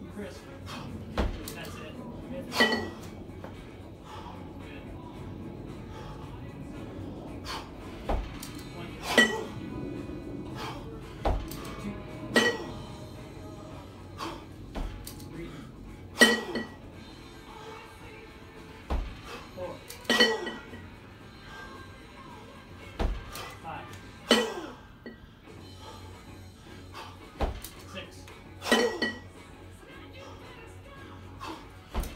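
Two 20 kg competition kettlebells clanking together during a double-kettlebell jerk set, a sharp ringing metal clink about every four seconds, once per rep as the bells are lowered to the rack, with smaller knocks between.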